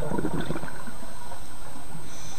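Scuba diver's exhaled bubbles gurgling from a regulator underwater, loudest in the first half second, then settling into a steady low rumble of water.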